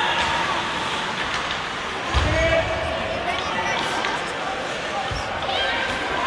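Voices calling out over the hum of a hockey game. Two low thuds come through, about two seconds in and again about five seconds in.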